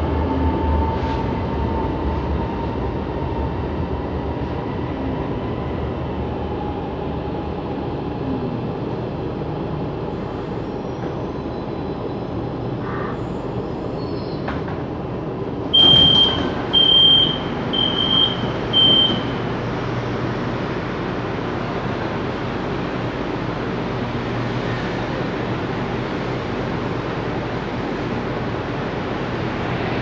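Steady running rumble inside a CSR Zhuzhou LRT car as it slows to a stop at a station. About halfway through, a high door chime beeps four times as the doors open.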